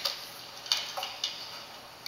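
A few light clicks and taps, four in quick succession over about a second and a half, from a marker and sheets of paper being handled on a table.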